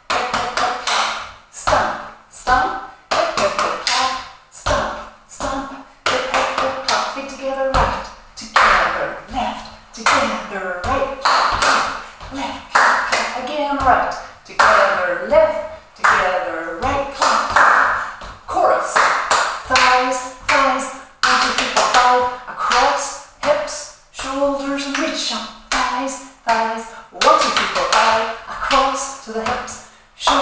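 Body percussion without music: rhythmic hand claps, pats and foot stomps on a wooden floor, with a woman's voice calling out the moves between and over the strikes.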